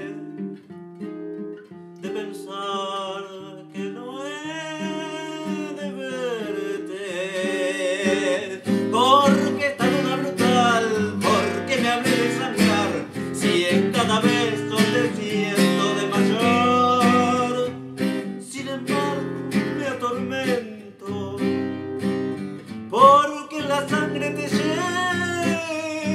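A man singing a tango with acoustic guitar accompaniment. The guitar plays held chords at first, then strums hard and louder from about eight seconds in.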